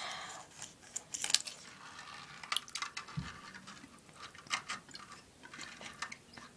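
Faint scattered clicks and light wet taps: a fingerboard's deck and wheels knocking against a porcelain sink in shallow water, with one soft low thump about three seconds in.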